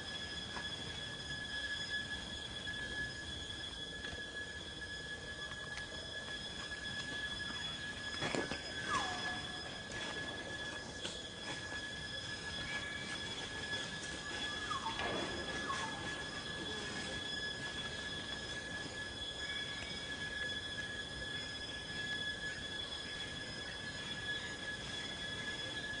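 Steady, high-pitched drone of forest insects at two fixed pitches, with two short falling squeals about eight and fifteen seconds in, which plausibly come from the infant macaque held by its mother.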